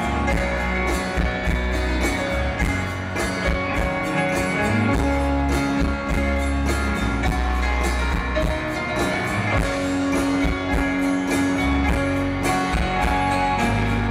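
Live rock band playing an instrumental passage: strummed guitars over bass and drums, with no vocals, heard from within an arena audience.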